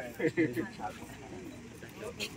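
Indistinct conversation among a group of people standing close together, a few short phrases in the first second and then a low murmur.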